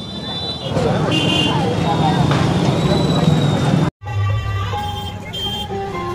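Busy street ambience: a crowd's voices and passing traffic. It cuts off abruptly at about four seconds, and music begins.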